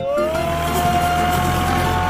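Cartoon engine sound effect for a tractor speeding past: a whine that rises at the start and then holds steady over a low engine hum, with background music.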